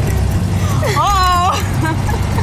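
A car engine runs with a steady low rumble. About a second in, a short, high-pitched vocal cry rises and falls over it.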